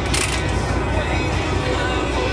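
Detroit Series 60 14-litre diesel idling, heard from inside the truck cab, with the air-conditioning blower running steadily over the low engine rumble. A brief high hiss comes just after the start.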